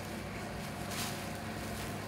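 Steady low room hum with a soft rustle about halfway through as cast padding is smoothed around the leg by hand.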